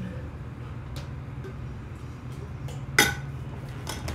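Metal water bottle handled after a drink: a faint tick about a second in, then one sharp metallic clink with a brief ring about three seconds in as the bottle or its lid knocks. A low, steady hum sits underneath.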